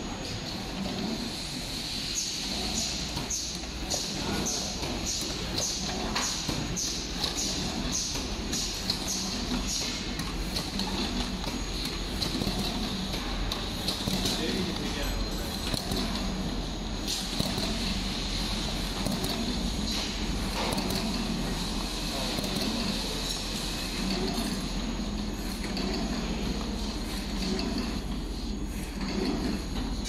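Automatic cartoning machine running: a steady mechanical clatter and hum, with a regular ticking about twice a second from its indexing mechanism for the first several seconds.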